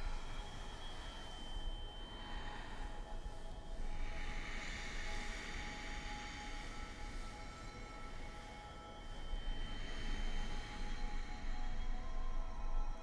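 Ambient drone score: a low rumble under a haze with faint sustained high tones, swelling a little near the end.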